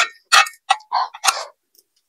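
Close-miked chewing of ramen noodles: wet, rhythmic mouth sounds about three a second that stop about a second and a half in.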